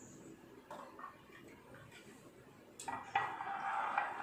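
Steel tea strainer and drinking glass clinking and scraping as milk is strained into the glass, with a small click early and a louder clattering stretch in the last second or so.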